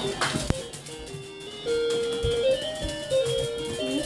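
Simple electronic tune from a toddler's ride-on toy car, played one held note at a time, stepping up and down. A single knock sounds about half a second in.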